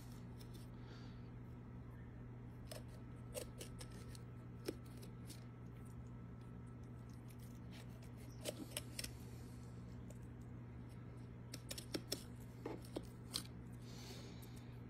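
Kitchen knife cutting rabbit meat off the bone on a cutting board: scattered soft clicks and scrapes, bunched about eight to nine seconds in and again around twelve to thirteen seconds, over a low steady hum.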